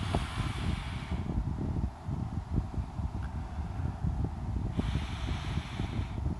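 A person sniffing hard close to the microphone: one long inhale through the nose at the start and another near the end, over a low, uneven rumble of handling noise.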